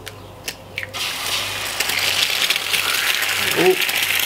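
An egg being cracked with a few sharp shell clicks, then dropped into hot bacon grease in a frying pan: the fat sizzles loudly and steadily from about a second in.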